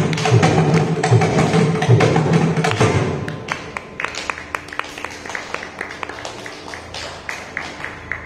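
Mridangam playing a solo passage: loud, dense strokes with deep bass for about three seconds, then dropping to soft, sparse, crisp finger strokes.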